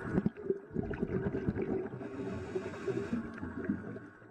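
Underwater bubbling of CO2 gas escaping from the seabed in streams of bubbles, heard as rapid, irregular low pops and gurgles.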